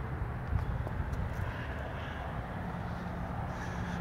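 Steady low engine hum from a distant vehicle or aircraft, with a faint knock about half a second in.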